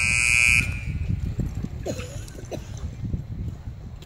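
Arena time buzzer sounding the end of a cutting run, a loud steady electric tone that cuts off about half a second in. After it, low irregular thuds and rumble of horse and cattle moving on the dirt, with two short pitched calls around the middle.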